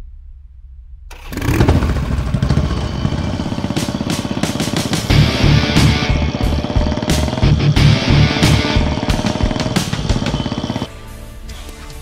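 Motorcycle engine running under a loud music track. Both start suddenly about a second in and cut off sharply near the end.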